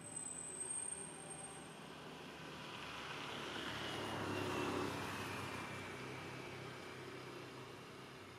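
A motor vehicle passing by: its engine and road noise swell to a peak about halfway through and then fade away, the pitch falling slightly as it goes. A thin high whistle sounds briefly at the start.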